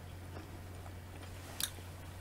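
Faint chewing of a mouthful of steak tips and salad, over a low steady hum, with a single sharp click about one and a half seconds in.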